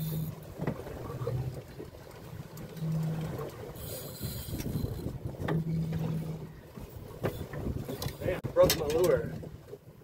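Spinning reel being cranked against a hooked fish that is pulling, over a steady bed of water and wind noise on a boat. A short vocal sound comes about a second before the end.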